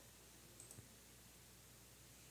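Near silence with two or three faint computer mouse clicks a little over half a second in.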